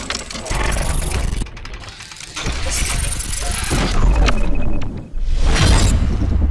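Intro sting made of sound effects: deep bass hits under noisy, glitchy whooshes that surge three times, with a glass-shattering effect near the end.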